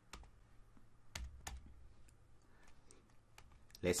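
Computer keyboard typing: irregular, sparse key clicks, with a few louder strokes at the start and about a second in.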